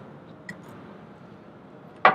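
Low steady background noise with one light click about half a second in.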